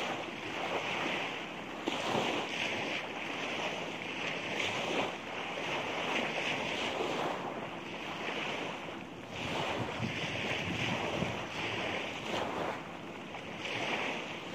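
Surf washing on a beach, with wind buffeting the microphone; a steady rush of noise that swells and eases every second or two.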